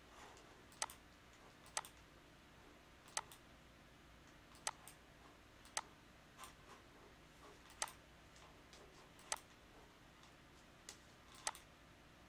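Computer mouse clicks at an irregular pace, roughly one every second, some doubled as a quick press and release, over a faint steady hum.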